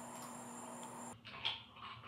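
Steady high trill of night insects over a low hum, cutting off suddenly about a second in. After that come a couple of faint knocks.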